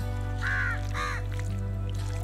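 Two crow caws, about half a second apart, over steady background music.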